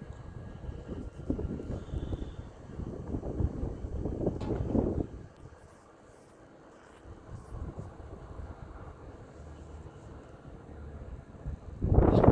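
Low, uneven rumbling noise of wind on the microphone, which dies away about five seconds in and slowly builds again.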